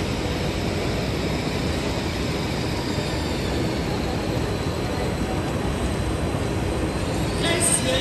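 ICE high-speed train rolling slowly into a terminus platform, a steady low rumble in the station hall's echo mixed with crowd noise. A short high-pitched sound comes near the end.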